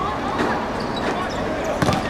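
A football being kicked on the pitch: one sharp thud near the end, over a background of players' distant shouts and voices.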